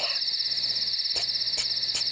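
Crickets chirping in a steady, fast-pulsing high trill, with two short clicks a little past a second in.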